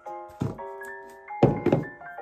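Dull knocks of a plastic skincare tub being capped and handled: one soft knock about half a second in, then three louder ones close together near the end, over background music with keyboard-like notes.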